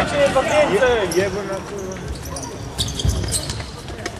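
A futsal ball being kicked and bouncing on a sports hall floor, with a thump about three seconds in, all echoing in the large hall. Players' voices call out in the first second or so.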